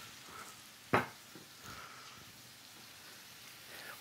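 Shrimp sizzling steadily in hot oil in a nonstick skillet, with a single sharp tap about a second in.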